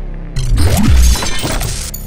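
Logo-intro sound design: a low music drone, with a loud crash-like sound effect lasting about a second and a half that starts about half a second in, a deep swooping tone inside it.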